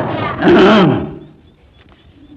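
A man's voice in a drawn-out utterance of about a second, its pitch falling near the end, followed by a pause with only faint room noise.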